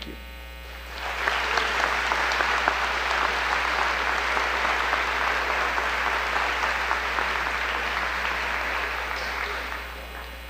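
Audience applauding, starting about a second in and dying away near the end, over a steady low mains hum.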